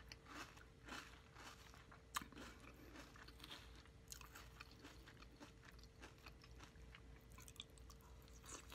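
Close-miked chewing of a mouthful of crunchy Fruity Pebbles cereal in milk, a steady run of soft crunches with one sharper crack about two seconds in. A faint steady hum sits underneath.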